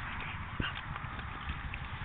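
Wet mud squelching and slapping as a Staffordshire Bull Terrier rolls and thrashes in a mud puddle, in irregular soft thuds.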